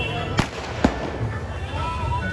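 Two sharp firecracker bangs about half a second apart, over steady crowd chatter.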